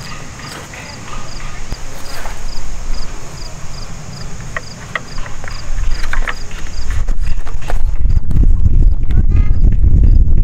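Bungee cords and their hooks being worked around metal climbing sticks and a tree-stand platform, giving a few sharp clicks and knocks, over a cricket chirping steadily about twice a second. From about seven seconds in, a loud low rumble takes over.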